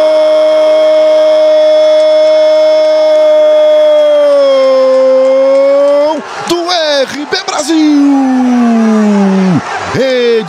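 A Brazilian football commentator's long goal cry, 'Gooool', one note held for about seven seconds that dips slightly in pitch near the middle and breaks off about six seconds in. Excited shouted commentary follows, with one long falling drawn-out syllable near the end.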